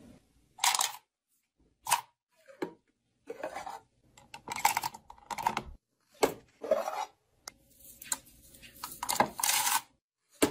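Clay bead bracelets and clear plastic containers being handled: a string of short clacks and rustles at irregular intervals, with brief silences between.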